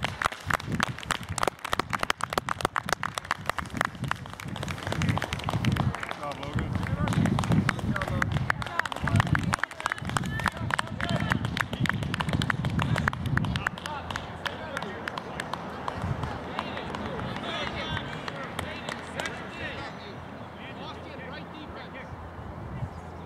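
Scattered hand clapping from spectators, mixed with people talking; the clapping dies away after about 13 seconds, leaving quieter voices.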